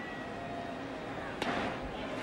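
Stadium crowd noise with one sharp pop about one and a half seconds in, the pitched baseball smacking into the catcher's mitt for ball four.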